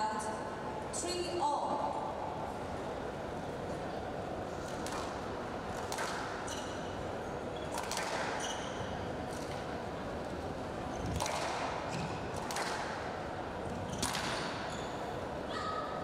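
Squash rally: about a dozen sharp smacks of rackets on the ball and the ball striking the court walls, spaced irregularly and echoing in the hall, with a few short shoe squeaks on the court floor.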